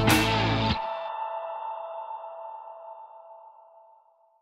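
Closing logo jingle: the music stops short under a second in, leaving a ringing tone that fades away slowly.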